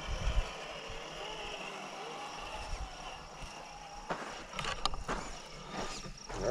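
RC scale Ford Bronco crawler driving slowly over gravel, its small electric motor giving a faint steady whine. There is a low thump at the start and a few sharp clicks about four to five seconds in.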